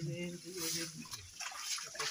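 Men's voices talking, with wet splashing and squelching of hands digging into waterlogged sand and muddy water.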